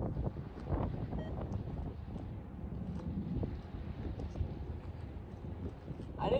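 Wind buffeting the microphone: a steady low rumble with a few faint clicks.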